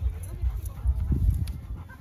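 Wind buffeting the microphone in gusts, with faint voices of people talking underneath.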